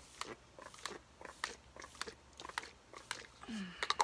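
Makeup setting spray being pumped onto the face: an irregular run of short clicks and brief hisses from the pump bottle, with one short hiss a little after three seconds in.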